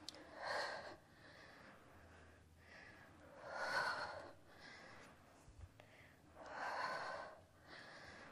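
A woman breathing hard from exertion during push-ups: three heavy breaths, about three seconds apart.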